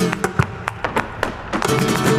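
Live flamenco: sharp, irregular strikes of palmas hand-clapping and a dancer's heel-and-toe footwork, over flamenco guitar that drops back in the middle and returns near the end.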